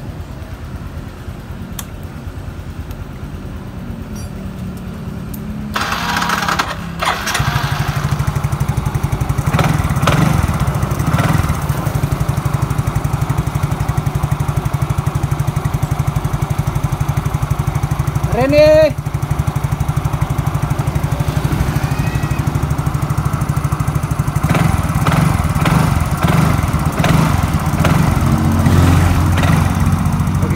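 Yamaha Mio Soul GT 110 scooter's single-cylinder four-stroke engine started about six seconds in, then idling steadily. The main fuse now holds instead of blowing, after a wire chafed through to the frame was taped up.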